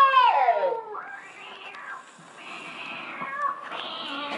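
A high, wavering wail that falls in pitch and ends about a second in, followed by softer hissing noises, from the sound effects of an animatronic Halloween yard show.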